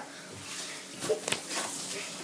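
Feet pressing and stepping on an inflated rubber balloon on carpet: a few faint rubbing and thumping sounds about a second in. The balloon has not popped.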